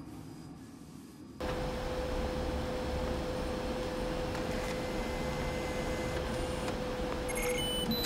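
Steady electronic machine hum of a laboratory, cutting in suddenly, with a held mid-pitched tone over a noisy bed. A few short electronic beeps come near the end.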